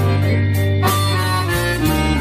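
Blues tune played on an electro-bayan (button accordion), with sustained chords over a moving bass line and a few sharp drum-like hits.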